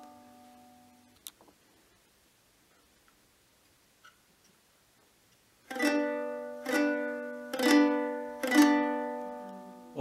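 Six-string early medieval lyre strummed in a B minor chord by the block-and-strum method: fingers damp the G, A, C and E strings so only the open B and D ring. An earlier strum fades out in the first second. After a pause of about four seconds, the chord is strummed four times, about once a second, each stroke ringing and fading.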